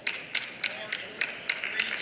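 Sharp hand claps in a steady rhythm, about four a second, over faint crowd voices.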